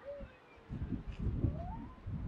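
A bird's thin, drawn-out calls gliding in pitch, one slowly falling and then one rising near the end, over a low gusty rumble of wind on the microphone.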